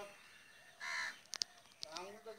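A crow caws once, a single harsh call about a second in, followed by a few short sharp clicks.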